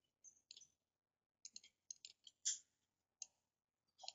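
Faint, scattered clicks from a computer mouse and keyboard as text is selected and deleted, about a dozen in all. The longest and loudest comes about two and a half seconds in.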